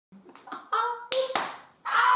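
Two sharp hand claps a little over a second in, among a woman's short vocal exclamations, with a long held call beginning near the end.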